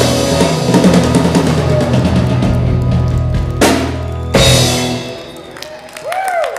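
Live rock band (electric guitars, bass, keyboard and drum kit) playing loudly, then hitting two loud drum crashes less than a second apart near the end of the song; the final chord rings out and dies away about five seconds in.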